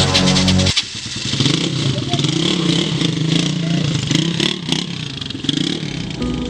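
Small street motorcycle's engine running and revving: a loud burst in the first second, then a steady run with its pitch wavering up and down.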